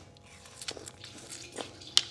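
A person biting into and chewing a slice of watermelon: a few soft wet crunches, then one sharp bite near the end.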